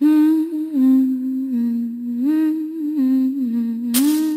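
A woman humming a slow melody unaccompanied, moving in small steps and gliding between notes; it starts abruptly at the beginning.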